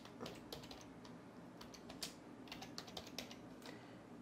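Typing on a computer keyboard: a quiet, irregular run of key clicks.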